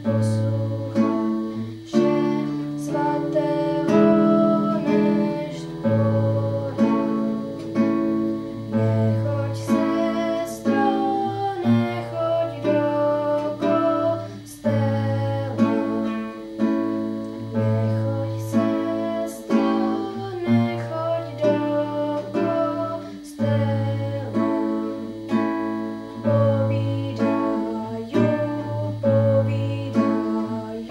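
Nylon-string classical guitar played in a steady rhythm of picked and strummed chords, with a girl singing along at times.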